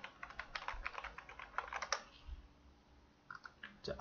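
Faint computer-keyboard typing: a quick run of keystrokes for about two seconds, then a pause and a few more key presses near the end.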